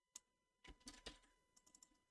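Faint computer keyboard keystrokes: a single click, then a quick cluster of clicks about half a second later, and two light taps near the end.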